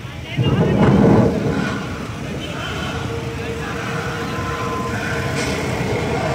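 Procession street noise: many motorcycle engines running among crowd voices. A loud rush of noise starts about half a second in and lasts about a second, and a long steady tone is held through the middle.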